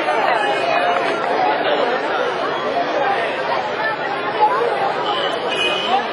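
Crowd of many people talking at once, a steady babble of overlapping voices with no single speaker standing out.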